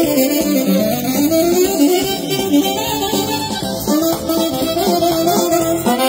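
A live band playing traditional dance music: a melody carried over a continuous instrumental accompaniment.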